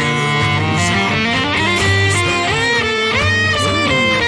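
An a cappella vocal group singing close harmonies, with pitches gliding, over a cello accompaniment.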